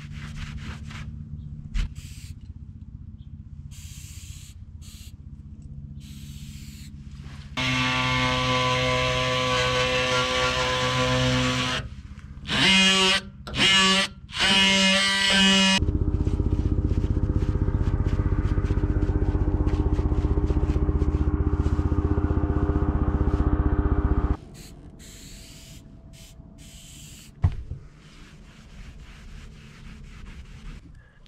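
Oscillating multi-tool with a scraper blade running in spells, scraping thick sticker adhesive, softened with adhesive remover, off a school bus's painted steel body: a steady buzz for about four seconds, two short bursts, then a longer run of about eight seconds, with a low hum in between.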